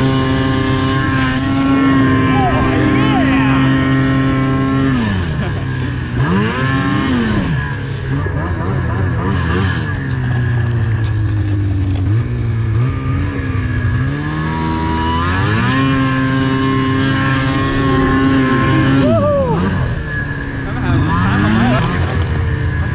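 Snowmobile engine under way, its pitch holding high and then falling away and climbing again several times as the throttle is eased off and reapplied.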